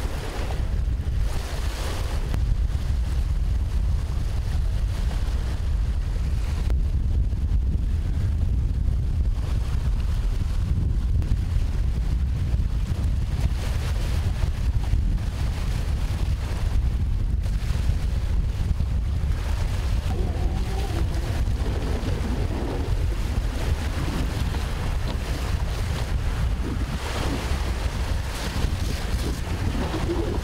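Wind buffeting the microphone in a steady low rumble, over choppy lake water washing in the shallows.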